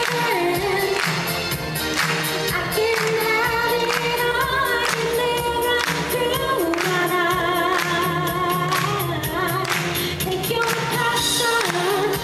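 A woman singing over pop backing music with a steady drum beat, holding long notes.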